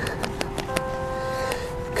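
A handful of sharp, irregular clicks and taps, over soft background music holding steady notes.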